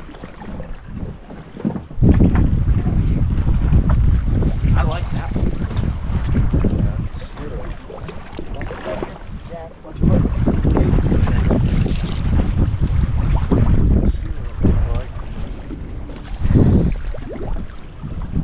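Wind buffeting the microphone in gusts: a heavy low rumble that comes in suddenly about two seconds in, eases off, and comes in again about ten seconds in.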